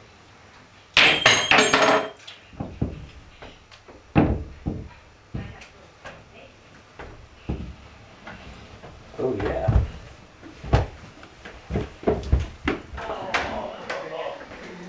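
Footsteps going down stairs: a run of irregular thuds and knocks, with a loud clattering burst about a second in.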